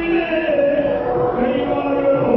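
Yakshagana bhagavata singing in a chant-like male voice, the melody gliding and held, over a steady harmonium drone with maddale drum strokes beneath.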